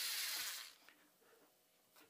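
Power drill with a glass-drilling bit running on the phone's Gorilla Glass screen and stopping about half a second in, after the bit has cracked the glass. Then only faint touches on the cracked screen.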